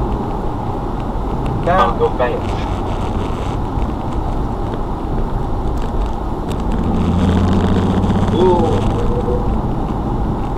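Car interior noise while driving: a steady mix of engine hum and road noise. About seven seconds in, the engine note grows louder and clearer for a couple of seconds.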